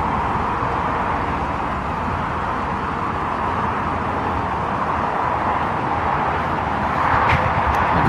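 Steady outdoor background rush with no distinct events: an even, unchanging noise with no clear engine note or clicks.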